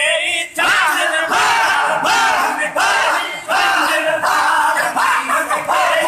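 A group of men loudly chanting a Sindhi naat together, a devotional song in repeated short phrases, with a crowd's voices around them.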